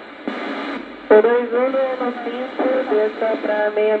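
Aviation-band voice radio heard through a homemade regenerative receiver's speaker. A short hiss comes about a third of a second in, then a narrow, tinny Portuguese-speaking voice of air traffic control or a pilot runs on.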